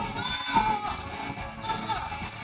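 Live blues band playing with electric guitars, a lead line bending up and down in pitch over the full band.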